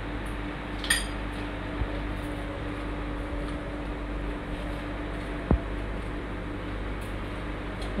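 Metal fork clinking against a ceramic bowl a few times while eating: a light clink about a second in and a sharper tap about five and a half seconds in. Underneath, a steady hum.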